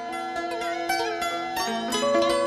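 Traditional Vietnamese instrumental music led by plucked zither (đàn tranh), with notes picked in quick succession over sustained tones.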